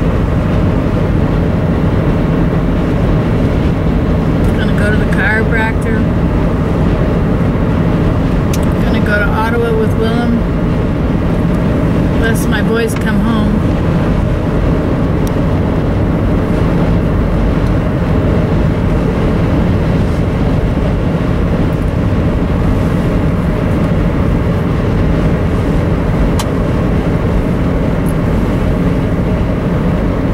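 Steady road and engine noise inside a car's cabin cruising at highway speed, with a low hum underneath. A few short voice-like sounds come in about five, nine and twelve seconds in.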